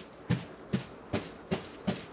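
Paintbrush dabbing thick, Saltwash-thickened chalk paint onto a drywall wall: five short brush strokes, a little over two a second.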